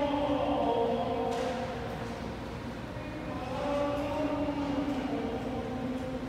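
Slow choral music, with voices holding long overlapping notes that change pitch every second or two.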